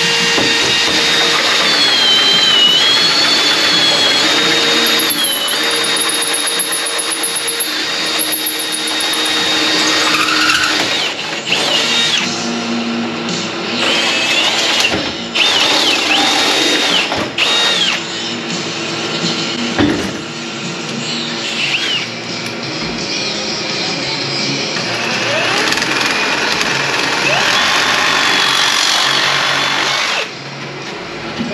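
Cordless drill turning a hole saw through the sheet-steel panel enclosure, with a wavering high whine from the cut, under background music.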